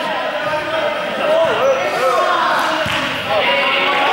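Group of people talking and moving about on a sports hall floor, trainer soles squeaking in short wavy chirps, with a dull thump about three seconds in, all echoing in the large hall.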